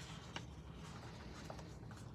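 Faint rustling and rubbing of paper and sticker sheets handled over a planner page, with a couple of light ticks.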